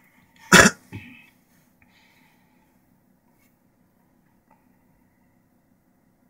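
A person coughs sharply once, with a second, softer cough about half a second later. A faint steady low hum runs underneath.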